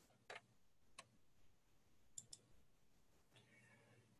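Near silence with a few faint, short clicks: one about a third of a second in, one at about a second, and a quick pair a little after two seconds.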